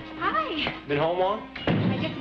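Lively talking, with pitch swooping up and down, over soft held background music, and a sharp thump about three-quarters of the way through.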